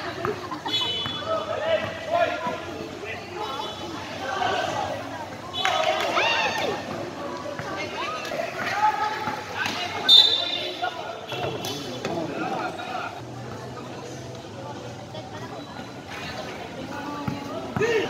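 A live basketball game: the ball bouncing on the court amid players' and onlookers' voices calling out and chattering, with the loudest burst about ten seconds in.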